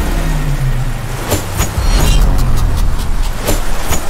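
Action sound design: a loud, deep rumbling drone with sharp sword clashes over it. There are two or three single strikes, then a quick run of clashes, and one more near the end.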